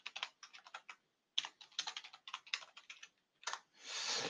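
Typing on a computer keyboard: a quick run of keystrokes, a short pause, then a longer run, with one last key about three and a half seconds in.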